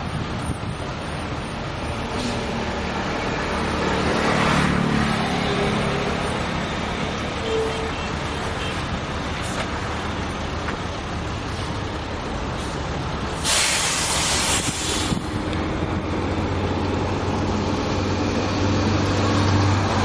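Steady road-vehicle noise, with a loud hiss lasting about a second and a half a little past the middle and a low engine hum building near the end.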